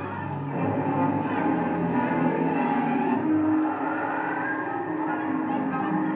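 A film soundtrack played back over a hall's sound system: dramatic orchestral storm music with swooping, sliding pitches over a rushing noise, accompanying a tornado scene.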